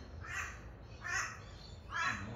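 A crow cawing repeatedly: three short caws, a little under a second apart.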